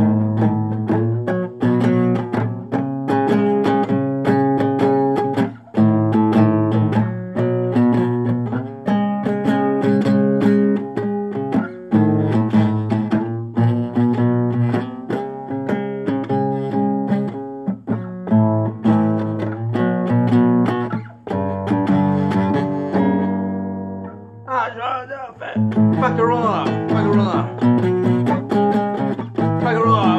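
A guitar strumming chords in a steady rhythm, a punk-style song. A voice comes in over the strumming about three-quarters of the way through.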